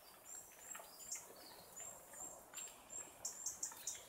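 Faint birdsong: a string of short, thin, very high notes repeated through, with a few light clicks.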